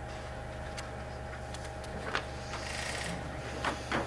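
Paper pages being handled and turned at a table, a few soft rustles and light ticks over a steady low electrical hum of room tone.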